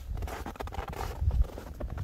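Footsteps in snow, a few irregular steps, over a low rumble of wind on the microphone.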